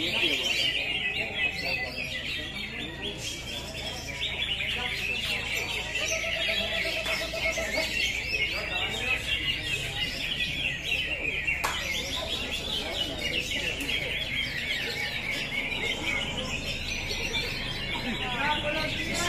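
Many caged greater green leafbirds (cucak hijau) singing at once, a dense, unbroken stream of rapid high chirps and trills, with a faint murmur of voices underneath.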